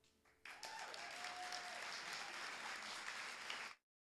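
Audience applauding, starting about half a second in, with one held cheer soon after it begins; the applause cuts off suddenly near the end.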